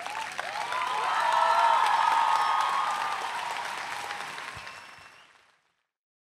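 Audience applauding, swelling for the first two seconds and then fading out.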